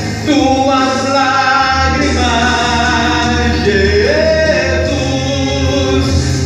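A man singing a Portuguese-language gospel song into a microphone, holding long notes that step up and down in pitch, with a steady bass accompaniment underneath.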